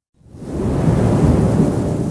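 A thunder-like rumbling sound effect that swells up after a brief moment of silence and then holds steady.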